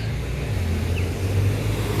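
Steady low engine rumble of nearby road traffic.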